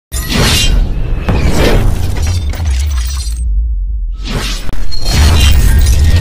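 Intro music with heavy bass and a glass-shattering effect. About three and a half seconds in it drops almost to silence for under a second, then comes back loud.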